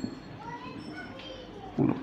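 Whiteboard marker squeaking faintly against the board in short, wavering high squeaks while words are written, with a short low sound near the end.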